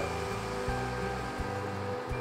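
Quiet background music with sustained notes and a soft beat about every 0.7 s, over a faint hiss of chicken broth being poured into a hot cast iron skillet of ground beef.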